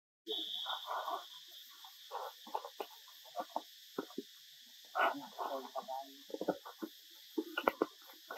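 Dry leaf litter rustling and crackling in short, irregular bursts as a baby macaque scrabbles through it, over a steady high insect drone.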